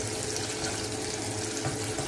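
Food frying in a pan on the stove, a steady high sizzle, with a faint steady hum underneath.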